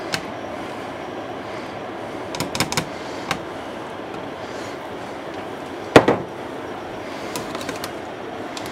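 Scattered clicks and taps of a spatula and the metal hopper on a stainless-steel spätzle maker, with one louder knock about six seconds in, over a steady low background noise.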